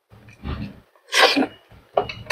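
Close-miked chewing and mouth noises of a person eating grilled eggplant, with one loud, sharp mouth noise about a second in.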